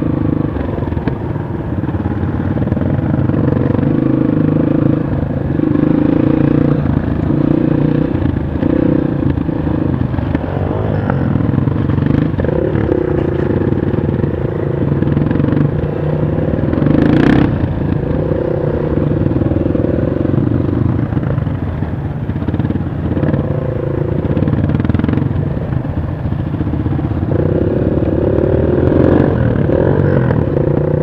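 Honda CRF230 dirt bike's single-cylinder four-stroke engine running at low speed, heard from on the bike, its note rising and falling again and again as the throttle is opened and closed. A sharp knock a little past halfway.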